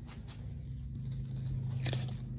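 Light handling noise as a packaged baby quilt is moved, over a low steady hum, with a short crinkle just before the end.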